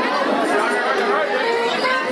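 Crowd chatter: many people talking at once in a crowded hall.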